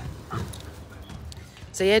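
Two Great Danes play-fighting, with a few short, soft dog vocalisations.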